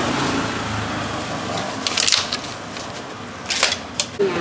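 Busy street-stall background noise with a low engine-like hum that fades in the first second, followed by two brief sharp handling noises, about two seconds in and again near the end.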